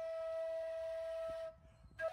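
Background flute music: one long, steady held note that stops about one and a half seconds in.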